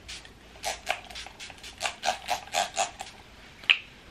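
Facial-mist pump spray bottle spritzed in quick succession, about a dozen short hisses over two or so seconds, then one more short hiss near the end.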